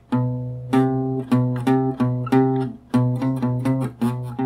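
Acoustic guitar playing single plucked notes B and C, a half step (minor second) apart, fretted on two neighbouring strings with a wide hand stretch. About three notes a second.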